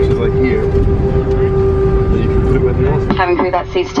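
Airliner cabin noise: a steady low rumble of engines and air-conditioning with a constant hum, and a voice coming in near the end.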